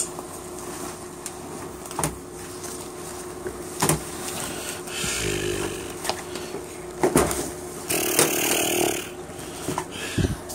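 Handling noise from a nylon load-bearing vest and its pouches being moved about: scattered knocks and clicks with rustling of webbing, busiest near the end, over a faint steady hum.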